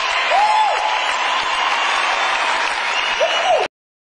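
Concert audience applauding as a live pop song ends, with two short rising-and-falling calls rising above the clapping. The sound cuts off suddenly near the end.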